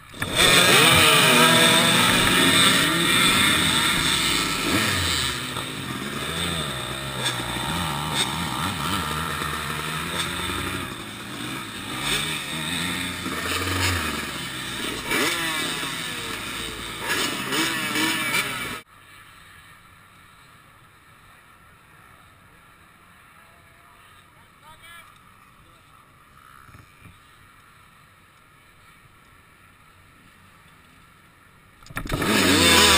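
Several dirt bike engines idling and revving together on a race start line, a tangle of overlapping rising and falling engine notes. The sound stops suddenly about two thirds of the way through, leaving only a faint background.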